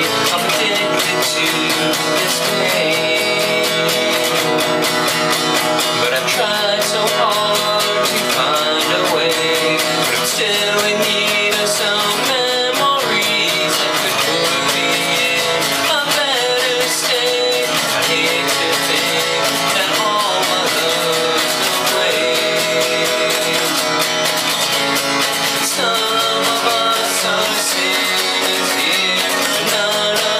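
Acoustic guitar strummed steadily, with a man singing over it at times.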